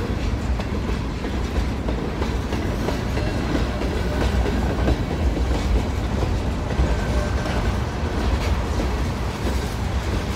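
Freight cars of a manifest train, covered hoppers and tank cars, rolling past close by: a steady low rumble with the clickety-clack of steel wheels over the rail joints.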